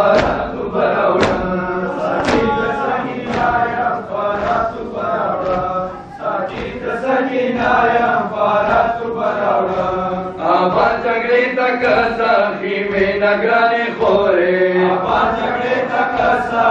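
A crowd of men chanting a noha together, with sharp rhythmic slaps of matam chest-beating about twice a second, plainest in the first few seconds.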